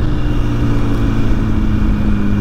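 2006 Honda CBR1000RR's inline-four engine, fitted with a Jardine exhaust, running at a steady pitch while riding, which eases down slightly near the end. A low wind rumble on the helmet microphone sits underneath.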